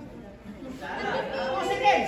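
Spectators' chatter: several voices talking at once, louder in the second half.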